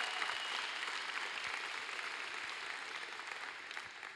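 Audience applause that slowly dies away.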